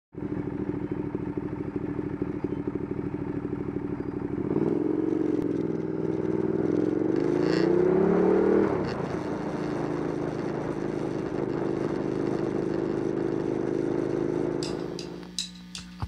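Ducati Diavel's 1198 cc L-twin engine heard from on board: it runs at low revs, rises in pitch for about four seconds as the bike accelerates, drops back, then holds a steady note. Near the end the engine fades under drum-led music.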